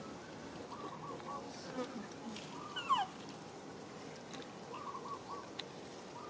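Birds calling, short repeated notes in small clusters about a second in and again near the end. A brief falling squeak about three seconds in is the loudest sound.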